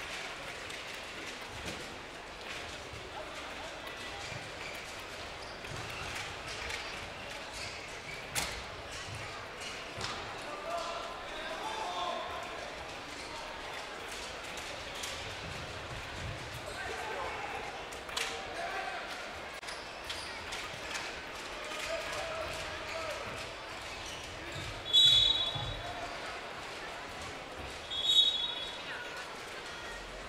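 Sports-hall ambience during an indoor futsal match: crowd chatter and shouts echoing in the hall, with occasional sharp thuds of the ball being kicked. Near the end come two short, loud, shrill high-pitched tones about three seconds apart.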